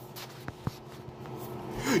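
Two short light clicks about half a second apart, from a hand handling the phone that is recording, over a faint steady hum; a man's voice starts near the end.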